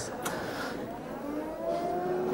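Ride-on floor scrubber's electric motor whining, its pitch rising slowly as it runs up.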